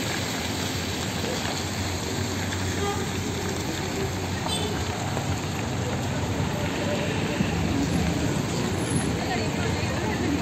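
Street traffic noise: a steady, rough rush from passing cars and scooters on a busy road, with indistinct voices in the background.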